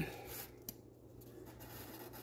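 Faint scratching of a pencil being drawn around the edge of a sanding disc on a sheet of sandpaper, with one small tick less than a second in, over a low steady hum.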